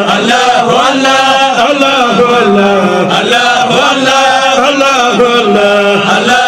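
A man's voice chanting a Sufi dhikr (zikr) through a microphone, a loud, continuous melodic chant whose pitch rises and falls in short repeated phrases.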